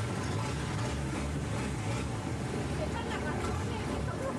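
Engine of a Thai long-tail boat taxi running steadily under way, a continuous low drone.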